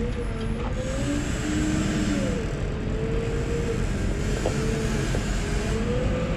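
Diesel engine of a wheel loader with lifting forks running under load as it raises and carries a car, a low rumble with a whine that wavers up and down in pitch.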